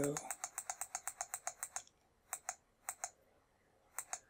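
A quick run of sharp clicks, about eight a second for nearly two seconds, then a few scattered single clicks. This is the right-arrow key of a TI-84 emulator being pressed over and over to step a trace cursor along a graph.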